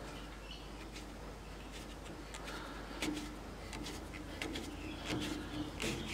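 Stabilized maple burl blank being screwed by hand onto a steel bottle-stopper mandrel, the mandrel's thread cutting into the wood with faint, irregular squeaks and clicks that come more often toward the end, over a low steady hum.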